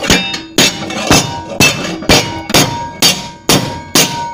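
Rubber mallet hammering a sheet-metal body panel clamped in a vise, bending it to an angle: about two blows a second, nine in all, each with a brief metallic ring.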